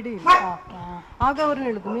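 A woman's voice talking in short phrases, with a brief pause in the middle.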